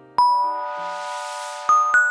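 Chime sound effect for an on-screen transition: a bell-like ding that rings on, a swelling whoosh, then two higher chime notes near the end.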